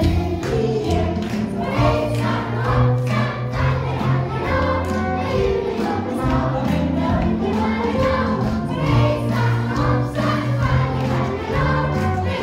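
Live band playing a Christmas song with a steady beat, bass and several instruments, with singing voices carrying the tune.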